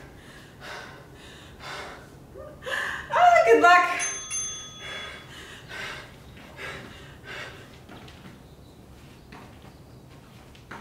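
A brief vocal sound about three seconds in, then a single bell-like chime from an interval timer marking the start of a work interval. After it, soft thuds repeat a little more than once a second as sneakers land on the mat during lateral squat switches.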